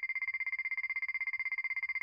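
Racecourse betting-close buzzer: a steady, high electronic buzz that pulses very rapidly, heard through a tablet's speaker.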